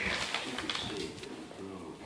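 Stifled laughter in short, low, breathy spurts, with light rustling and clicking from a paper bag stuck over a dog's head as the dog moves about.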